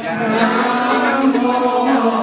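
Buddhist chant sung by a group of male voices in long held notes.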